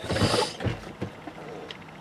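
Rustling handling noise, then a few light mechanical clicks inside a car.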